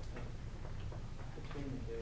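A student's voice speaking faintly from a distance, clearest near the end, over a low steady room hum, with a few faint ticks.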